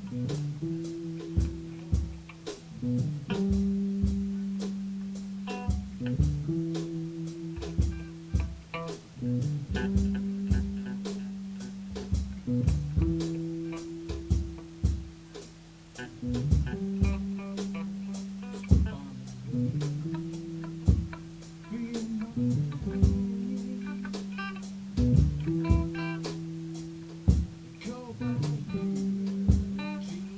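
Improvised rock jam: guitar and bass guitar repeat a riff of a few held low notes, the phrase coming round about every three seconds, with drum hits throughout.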